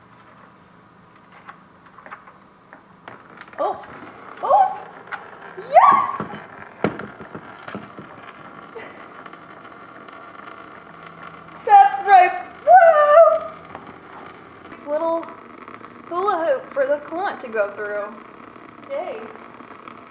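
A woman's short wordless vocal sounds, exclamations and laughs, in several bursts over a faint steady hum.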